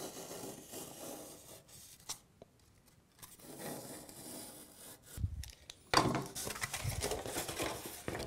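A utility knife cutting through a foam board, a quiet scraping, tearing drag in short strokes. About six seconds in, a sudden louder tearing and scraping starts as the foam board is pulled apart along the cut.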